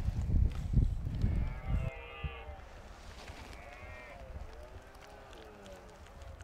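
Wind rumbling on the microphone for about two seconds, then three short, wavering bleating calls from distant grazing animals.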